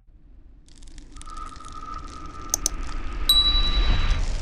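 Subscribe-button animation sound effects: a swelling whoosh with a steady tone under it, a quick double mouse click about two and a half seconds in, then a bright notification ding as the bell appears.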